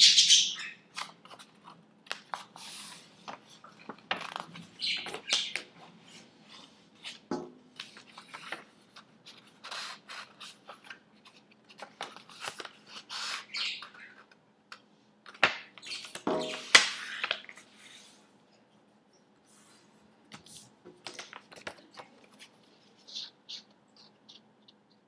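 Pet budgerigars chirping and chattering irregularly, mixed with the rustle and crinkle of a sheet of paper being handled and folded in half. The sounds come in scattered short bursts, loudest right at the start and again about two-thirds of the way through, thinning out near the end.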